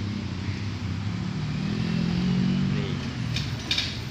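Road traffic of cars and motorcycles passing close by, with a steady low rumble. One vehicle's engine hum grows louder about a second and a half in and fades again before the end.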